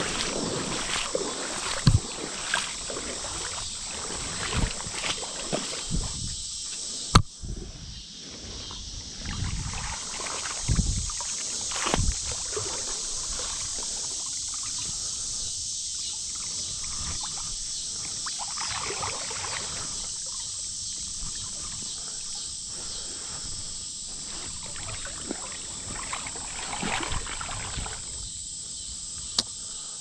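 Creek water sloshing and splashing as a seine net on wooden poles is pushed through a shallow stream by people wading, in irregular swishes and splashes. There is a sharp knock about seven seconds in and a few low thumps a few seconds later.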